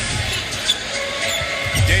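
Basketball dribbled on a hardwood court, one sharp bounce standing out about two-thirds of a second in, over a steady arena crowd din.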